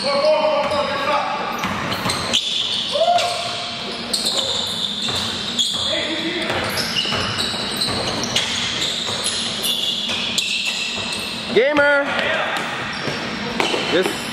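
Basketball being dribbled and bounced on a gym court, with players' voices echoing around a large hall. A brief, loud, high squeal comes near the end.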